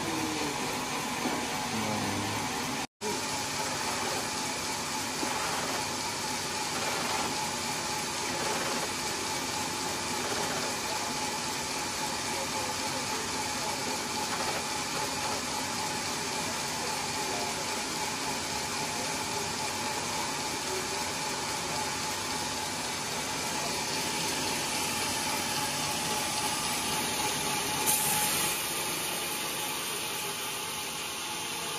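Band sawmill running, a steady machine hum and hiss with a constant whine. A brief louder burst comes near the end.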